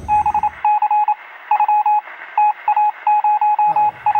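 Electronic beeping sound effect: one high tone switching rapidly on and off in irregular runs of short and longer beeps, with a thin, tinny quality.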